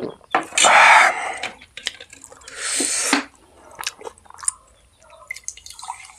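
Two loud breathy exhales by the eater, about a second and a half apart, followed by small wet clicks and squelches of fingers mixing biryani rice on a steel plate.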